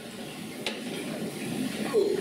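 An audience getting up from their seats: a low, even rustle and shuffle of clothing, chairs and feet, with one short click about two-thirds of a second in.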